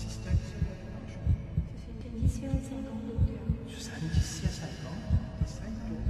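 Heartbeat sound effect: paired low thuds about once a second over a steady low drone.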